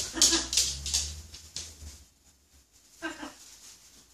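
Young blue-and-gold macaw chick giving short begging calls while being hand-fed: one at the start and another about three seconds in.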